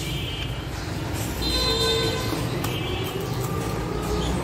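Road traffic rumbling with several short vehicle horn toots.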